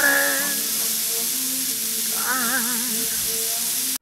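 A steady hiss of background noise with a single voice singing briefly, holding one wavering note a little after two seconds in.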